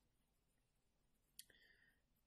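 Near silence, broken by a single short computer mouse click about one and a half seconds in.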